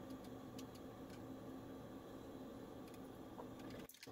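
Faint light ticks from a razor knife trimming thin, cured fiberglass off a door-frame edge, over a low steady shop hum.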